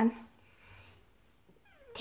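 A young boy's voice drawing out the end of a word, then about a second and a half of near silence (room tone), with a faint sliding voice onset near the end as he begins the next word.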